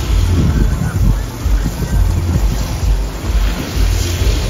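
Strong wind buffeting the microphone, a heavy low rumble that swells and fades unevenly as gusts drive dust across the ground.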